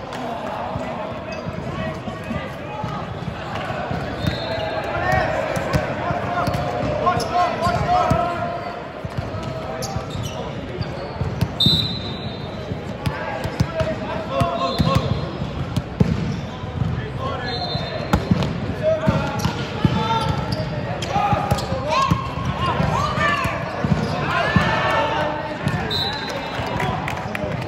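Indoor volleyball game in a large echoing hall: players shouting and calling to each other, the volleyball being hit and bouncing on the court with sharp knocks, and brief high squeaks of shoes on the court floor.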